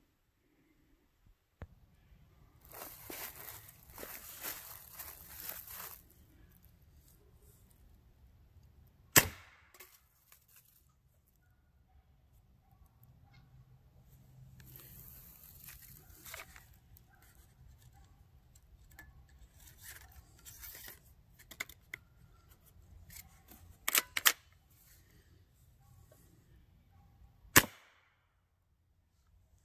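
Umarex Air Javelin arrow gun on a 4500 psi carbon-fibre air bottle regulated to about 1050 psi, fired a few times: sharp air-gun pops, the loudest about nine seconds in, a close pair about three-quarters of the way through and another near the end. Quieter rustling and handling noises lie between the shots.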